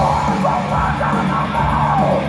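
Heavy metal band playing live at full volume, distorted electric guitar to the fore, heard from within the audience.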